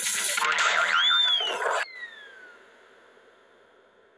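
Sound effects of an animated TV ident: a loud jumble of effects with a quick whistle-like glide that rises and falls about a second in, cut off abruptly near the two-second mark. A falling tone then fades away into silence.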